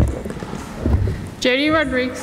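A few low thumps and knocks, then a woman starts speaking about one and a half seconds in.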